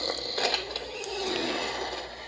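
Cartoon snoring sound effect from a sleeping character, heard through a tablet's speaker: a drawn-out breath in, then a breath out that slowly falls in pitch.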